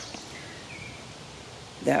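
Quiet, steady outdoor background noise, with one brief faint high chirp about a third of the way in.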